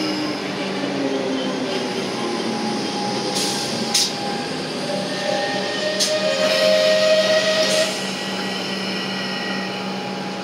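Melbourne Metro suburban electric train moving along the platform, with a steady electrical hum, traction-motor whine and brief sharp noises about four and six seconds in. It grows loudest just before settling, as the train comes to a stand.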